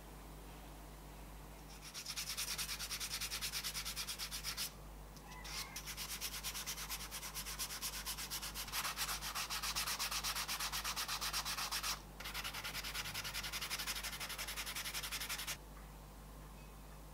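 A hand rubs the leather edge of a wallet in rapid back-and-forth strokes, several a second, as the edge is finished. The scraping starts about two seconds in, pauses briefly twice and stops just before the end.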